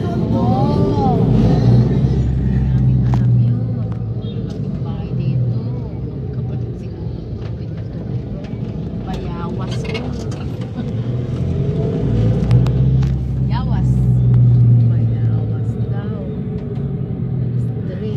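Engine of the vehicle carrying the camera running as it drives along a road, a steady low hum that swells twice, once in the first few seconds and again about twelve seconds in.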